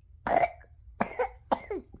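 Toddler coughing after a sip from a sippy cup: about four short coughs, the first the loudest.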